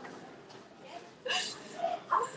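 A young woman crying: a sudden sobbing gasp about a second in, then a short high whimper near the end.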